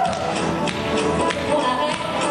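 Rock'n'roll dance music playing loud, with several sharp taps of dancers' shoes striking the floor in the footwork.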